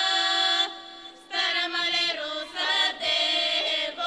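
A girls' folk vocal group singing Bulgarian folk song in harmony, in a bright, open-throated style. A long held chord breaks off under a second in; after a short pause the voices come back in short phrases with brief breaths between them.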